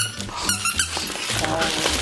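Squeaker inside a plush monkey dog toy squeaking in short, high bursts as a dog bites and tugs it, over background music.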